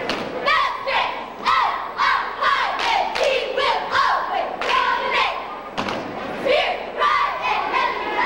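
Cheerleading squad shouting a cheer together, with a sharp thump landing about once a second.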